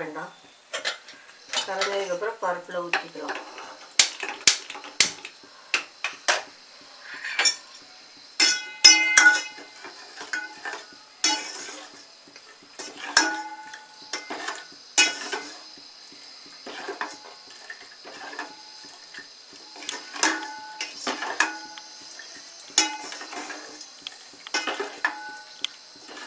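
Steel ladle stirring melting palm jaggery in a stainless-steel pot, clinking and knocking against the pot's sides at irregular moments, each knock ringing briefly.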